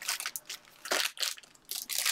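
Foil-wrapped trading-card packs crinkling and rustling as a stack of them is handled and shuffled, in short irregular bursts, the strongest about a second in.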